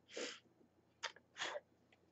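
Two short, faint puffs of breath through pursed lips, about a second and a quarter apart, with a small click between them.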